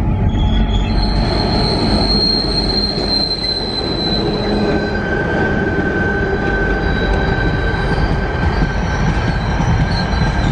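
An empty Tasrail ore train passes: the diesel locomotives run by, then the steel ore wagons roll past with a heavy steady rumble. The wheels squeal, first with a high steady tone from about a second in, then a lower one from about halfway through.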